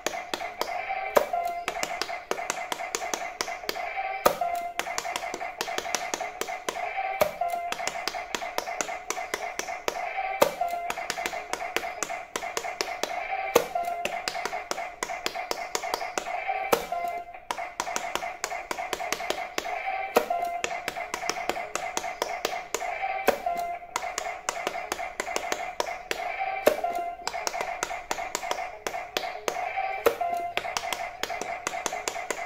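Fingers rapidly pressing the silicone buttons of a Pikachu-shaped electronic speed-push pop-it game, many quick taps and clicks. They sound over a looping electronic tune with a stronger beat about every three seconds.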